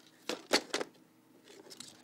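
Sharp clicks and knocks of a plastic alarm keypad case being handled: three quick clicks about half a second in, the middle one loudest, then a few fainter ticks near the end.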